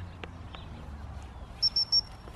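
Three short, high-pitched blasts on a gundog training whistle near the end, the usual recall signal to a Labrador.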